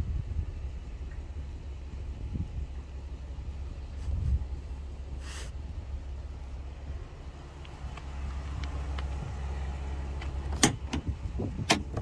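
Steady low vehicle rumble. Near the end come several sharp clicks and knocks as the truck's bed-rail storage box lid is unlatched and lifted.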